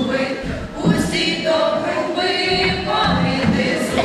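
A small mixed choir of children's and adults' voices singing unaccompanied: a Ukrainian folk carol (koliadka) sung without a break.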